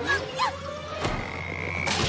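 Cartoon sound effects: a short squeaky glide, a sharp hit about a second in, then a rising whistle held high that ends in a loud smack as the cartoon pony slams into a wall.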